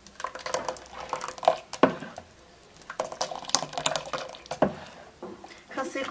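A metal spoon stirring and lifting thin baghrir batter in a bowl: liquid sloshing and dripping back, with the spoon now and then knocking against the bowl in short clicks.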